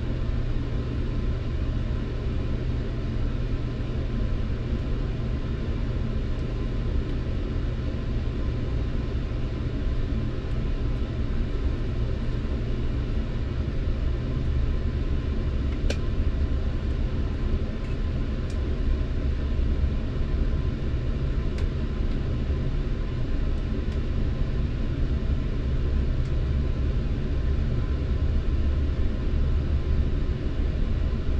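Steady low rumble inside a Metrolink commuter train passenger car as the train pulls out of a station, growing stronger from about halfway through as it gets moving. A few faint clicks sound around the middle.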